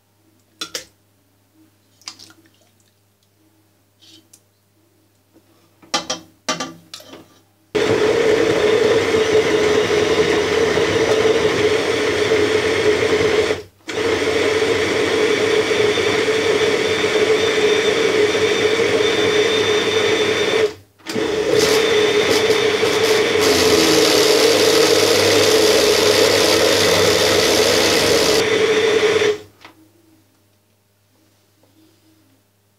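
Countertop electric blender pureeing cooked meat and vegetables into pâté, running loud and steady in three runs of six to eight seconds with brief stops between them. It is preceded by a few light knocks and clinks as the ladle fills the blender jar.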